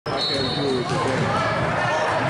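A basketball being dribbled on a hardwood gym floor during a game, with the voices of players and onlookers around it.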